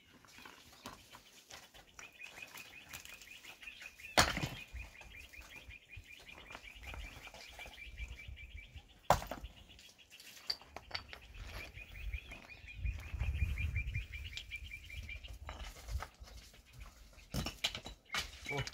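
Two sharp clacks of loose stones, about five seconds apart, with lighter scuffs of footsteps on rubble. Under them a high, rapid trill runs for several seconds at a time and pauses briefly near the middle.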